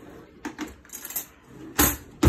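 Metal cutlery clinking as a kitchen utensil drawer is rummaged through: a few light clinks, then a louder clatter near the end.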